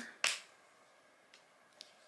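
A single sharp plastic click about a quarter second in, as a folding plastic hairbrush with a built-in mirror snaps shut, followed by a couple of faint light ticks from handling it.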